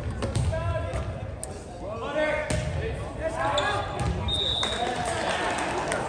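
Indoor volleyball match: voices calling and shouting over each other, sharp knocks of ball hits and court impacts, and a brief high whistle blast about four seconds in.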